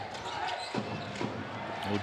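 Live game sound from a basketball broadcast: a ball being dribbled on the hardwood court over a low arena murmur.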